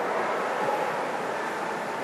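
A congregation laughing and murmuring together: a steady crowd hubbub with no single voice standing out.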